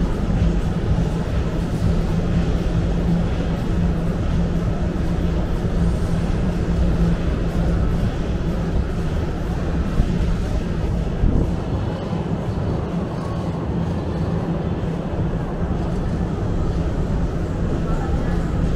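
Busy indoor concourse ambience: a steady low rumble and hum with indistinct background voices of passers-by.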